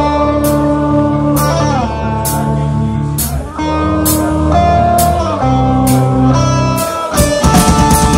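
Live heavy metal band: electric guitars hold sustained chords that change about once a second, each change marked by a cymbal crash. About seven seconds in, the drums and full band come in at a fast pace.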